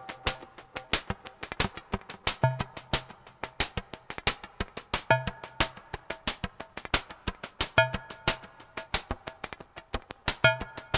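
A DIY synthesizer board plays a looping electronic sequence of rapid, clicky percussive ticks. A pitched note with a low bass body returns about every two and a half seconds, while the synth's knobs are being turned.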